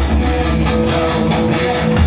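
Live rock band playing an instrumental passage: strummed electric guitar over bass and a steady beat.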